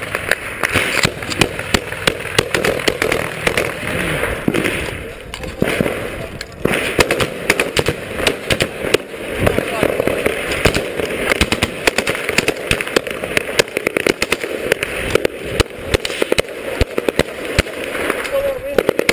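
Small-arms gunfire in a firefight: many sharp shots in quick succession, at times in rapid strings, with voices among them.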